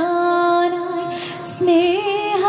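A woman's voice singing a devotional prayer song, holding one long steady note for about a second and a half, then moving up to a new note near the end.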